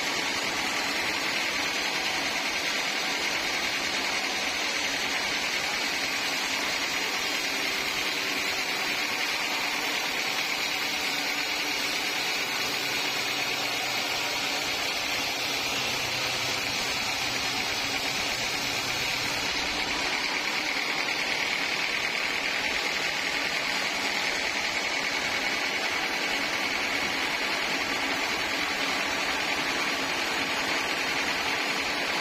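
Band sawmill running steadily as it saws a large teak log, an even, unbroken machine noise.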